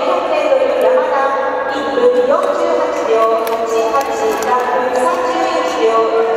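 Voices shouting long, drawn-out calls of encouragement, one call after another, with scattered sharp clicks.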